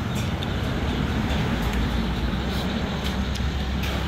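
Steady road traffic noise from cars passing on the street, with a low engine rumble.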